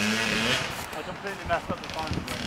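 Kawasaki KX100 two-stroke dirt bike engine running at a distance, a steady low note that fades after about half a second, with short bits of voice.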